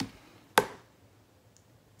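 Two sharp plastic clicks as a clear IKEA Samla storage bin is handled, about half a second apart with the second louder, then a faint tick.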